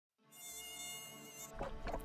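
Mosquito's high, wavering wing whine, cutting off about a second and a half in. A low rumble with a few short sweeping sounds takes over.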